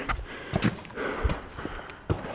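Footsteps scuffing and knocking on rock and stone steps during an uphill climb, a few irregular steps, with the climber's breathing.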